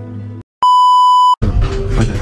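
Guitar background music cuts off, then a loud, steady electronic bleep sounds for under a second. It is followed by loud, jumbled sound from sped-up footage.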